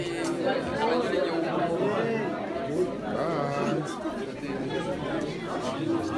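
Crowd chatter: many people talking at once in a large room, voices overlapping.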